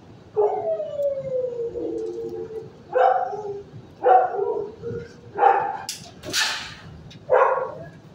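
A dog gives one long falling howl, then four short barks about a second or two apart. A short hissing noise comes between the last two barks.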